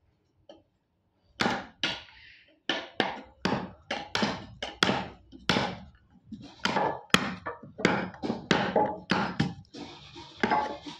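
Hammer striking a wood chisel to chop out a joint in window-frame timber. Quick, sharp strikes, about three a second, begin about a second and a half in.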